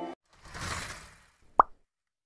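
Logo-animation sound effects: a soft whoosh that swells and fades over about a second, then a single short, sharp pop.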